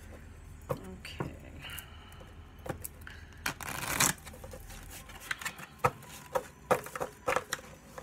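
A deck of cards shuffled by hand: a riffle that swells to a brief rush of flicking cards about halfway through, then a quick string of sharp card clicks.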